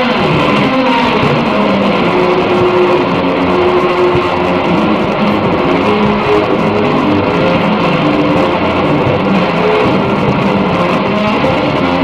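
Instrumental electric guitar music, loud and steady, with long held notes.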